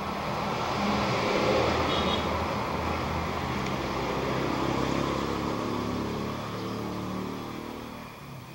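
A motor vehicle passing by: engine and road noise that swell about a second in and fade away toward the end.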